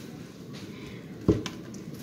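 A single sharp click or knock about a second and a quarter in, over steady low kitchen room noise.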